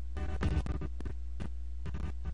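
A steady low electrical hum under a string of irregular clicks and short crackles, with a faint steady higher tone running alongside.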